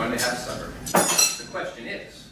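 China and metal tea things on a table clinking as they are handled: several clinks, the loudest about a second in with a brief bright ring.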